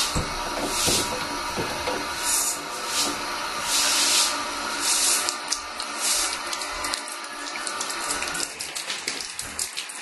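Water spraying up in a jet from a leak at a pipe fitting on top of a tank water heater and splashing back onto the tank top, a steady hiss and splash with a few louder surges.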